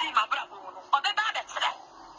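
A voice speaking over a telephone line, thin-sounding with little low end, in two short phrases with a pause between.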